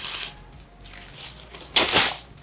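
Parchment paper unrolled from its box, rustling, then torn across the box's cutting edge in one short, loud rasp near the end.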